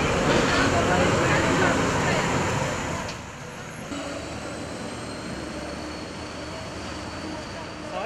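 City bus driving along a street, its engine and road noise loud for about the first three seconds with voices over it; then, after a sudden drop, quieter steady street background.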